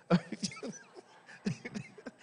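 Short scattered bursts of laughter and chuckling in a church, in response to a joke from the pulpit.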